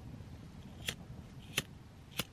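Lighter's flint wheel struck twice, two sharp clicks under a second apart, without a flame catching: the lighter is out of fuel.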